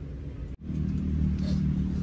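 Low, steady background rumble that cuts out abruptly for an instant about half a second in, then carries on as a steady low hum.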